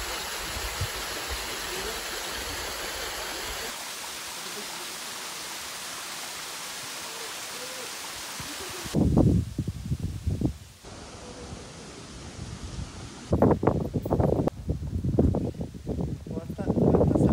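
Waterfall rushing steadily over a rock face, a continuous hiss of falling water. About nine seconds in it gives way to loud, irregular bursts of a different sound.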